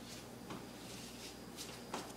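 Quiet room tone with two faint light clicks, about half a second in and near the end, from handling at the microwave as the food is taken out.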